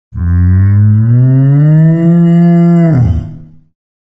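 A cow mooing: one long, loud call that slowly rises in pitch, holds, then drops sharply about three seconds in and fades away.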